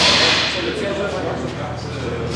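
Indistinct background voices over a steady low hum, opening with a short, loud hiss.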